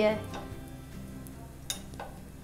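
Quiet background music with one sharp click near the end, a metal utensil tapping against the nonstick pan.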